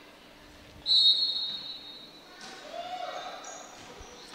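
A referee's whistle blown once: a single steady high note about a second long, starting about a second in. Fainter crowd and court sounds echo in a large gym.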